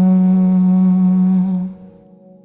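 A singer's voice holding one long note of a pop ballad over soft accompaniment, fading out near the end and leaving a quiet sustained keyboard chord.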